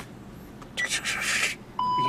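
A short electronic beep, one steady tone, near the end, after a brief breathy hiss.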